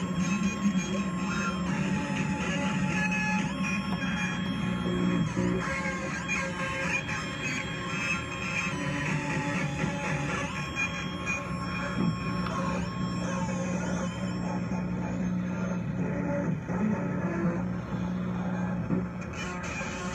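Modular synthesizer patch: a frequency-divided, phase-locked-loop oscillator plays a stepping, wavering lead line over a steady low drone, smeared by a delay pedal's repeating echoes into a dense, chaotic tangle of tones.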